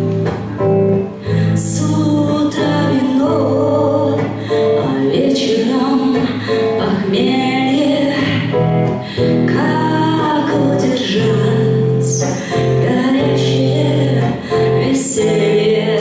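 A woman singing a slow song in Russian into a microphone, accompanying herself on electric guitar, played live through a PA.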